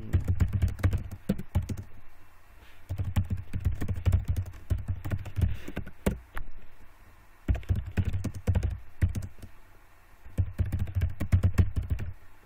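Typing on a computer keyboard: four runs of rapid keystrokes separated by brief pauses.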